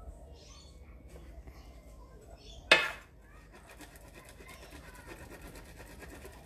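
Dairy-free cheese being grated on a flat metal grater: a faint, rapid rasping through the second half. A little before that, one brief, sharp, loud sound stands out above everything else.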